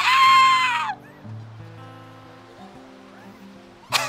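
A woman's high-pitched, excited squeal, held for about a second and falling in pitch as it ends. Then soft background music with low held notes, and a burst of laughter right at the end.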